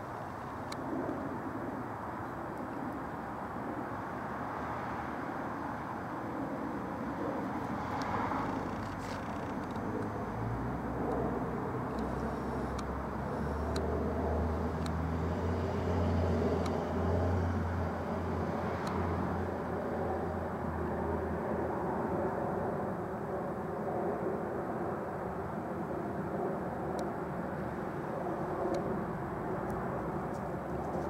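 Steady droning of a distant airplane's engines. A deeper hum swells about a third of the way in, is loudest around the middle, and fades again.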